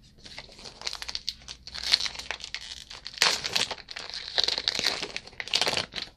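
Trading card pack wrapper crinkling and tearing as it is handled and opened, a dense run of crackles that is loudest about three seconds in and again near the end.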